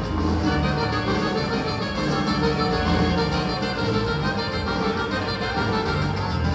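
A band playing dance music, loud and steady, with a regular beat.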